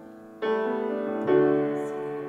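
Piano accompaniment with a pause in the vocal line: a chord struck about half a second in and a louder one a second later, each left ringing.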